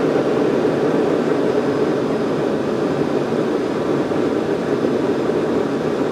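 Propane forge burner running with a steady rushing noise of flame in the firebox, fed at about 2 psi while its air-fuel mixture is tuned toward an even burn.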